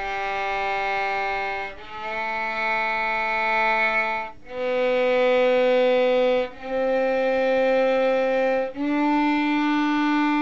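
A violin bowing five long single notes, one after another on the G string in first position, rising step by step from open G through A, B and C to D. Each note is held steady for about two seconds with a brief break between notes, and the last one is still sounding at the end.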